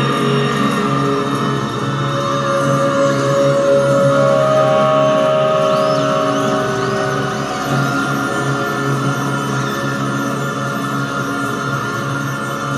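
Live stage music from the band: slow, sustained tones and drones with no steady beat.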